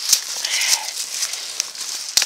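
Footsteps crunching through dry leaf litter, with twigs and brush crackling and scraping against the walker, and a few sharp snaps.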